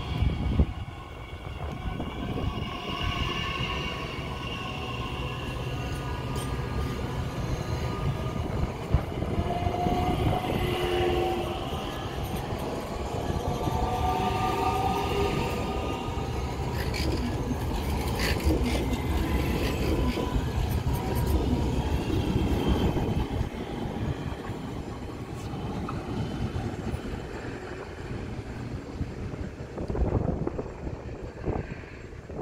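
A DB Class 442 Talent 2 electric multiple unit running slowly past at close range: a steady low rumble of wheels and running gear, with an electric whine that shifts in pitch partway through.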